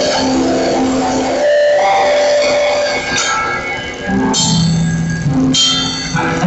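Live church music with guitar and drums, playing held chords that change every second or two.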